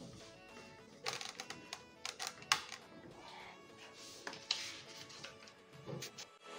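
Background music, with a string of sharp clicks and knocks from about a second in, the loudest about two and a half seconds in.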